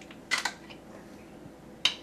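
Screw-top lid being twisted off a glass jar of pickled garlic: a short cluster of clicks about a third of a second in, then one sharp click near the end. No vacuum pop as the seal gives.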